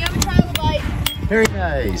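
Several sharp, separate clinks of hammers striking rock, as in hammer-and-chisel fossil digging, with faint voices between them.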